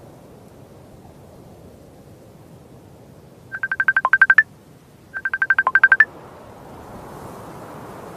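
A video-call ringtone from a laptop rings twice, each ring a quick run of high electronic beeps lasting under a second. The first ring comes about three and a half seconds in and the second a second later, over a low steady hiss.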